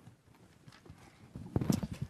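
Handling noise: irregular knocks, clicks and rustles of a microphone, chairs and papers as people sit down. It gets louder in the second half.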